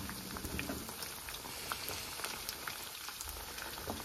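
Breaded finger fish frying in hot oil in a pan: a steady sizzle dotted with many small crackling pops, as the pieces are turned to fry their second side.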